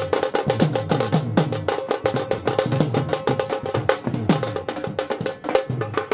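A dhol, a two-headed barrel drum, played fast with a stick in a steady dance rhythm of many strokes a second, its deep beats sinking in pitch.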